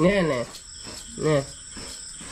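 A domestic cat meowing twice, short calls that rise and fall in pitch, one at the start and one just past the middle. Crickets trill steadily behind.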